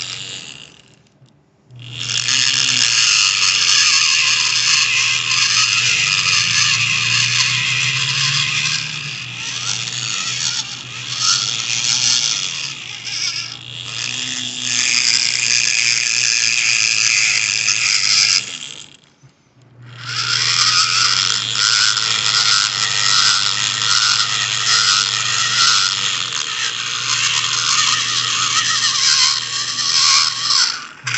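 Hand-held pencil grinder with an egg-shaped bit, run at low speed, cutting into the aluminium valve bowl of a Suzuki F6A DOHC turbo cylinder head. It stops briefly just after the start and again about two-thirds of the way through, then starts up again.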